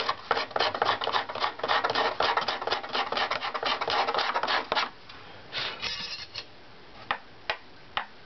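A hand scraper rasping over the inside of a violin back plate in quick back-and-forth strokes, about four or five a second, thinning an area toward the end of the plate that tests high in strip tuning. The scraping stops about five seconds in, a short run of strokes follows, then two light clicks near the end.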